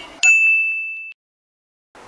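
A single high ding, a bell-like sound effect, about a quarter second in. It rings on one steady pitch for under a second and then cuts off abruptly.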